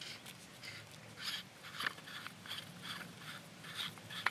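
Faint, irregular scratchy ticks and rubbing as the threaded joint of a metal survival baton is unscrewed by hand.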